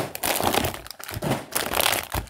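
Plastic snack wrappers crinkling as a hand rummages through packets in a cardboard box, an irregular run of crackles and rustles.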